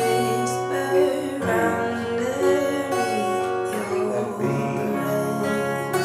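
Acoustic guitar capoed at the second fret, strummed through steady chords along with a recorded song whose singing and backing play at the same time.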